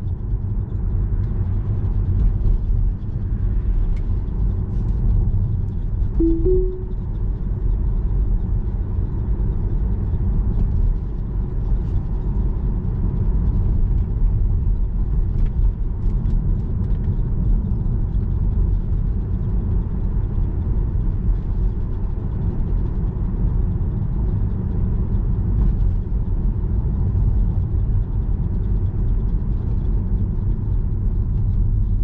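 Steady low road and tyre rumble inside the cabin of a Tesla Model 3, an electric car, driving at town speed. About six seconds in, the car sounds a short two-note chime that steps up in pitch.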